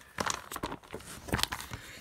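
Plastic trading-card binder sleeves crinkling and rustling as a binder page is turned and handled, with a few sharp crackles.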